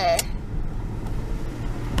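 Steady low rumble of a car's engine and road noise heard inside the cabin, with the end of a woman's word at the very start.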